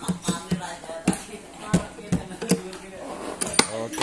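Indistinct voices talking, broken by a run of about nine sharp clicks and knocks; the sharpest comes a little before the end.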